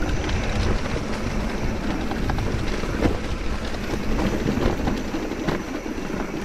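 Mountain bike riding fast down a dirt forest singletrack: steady rolling tyre noise over leaf litter and roots with a low rumble and the bike rattling, broken by a few sharp knocks from bumps.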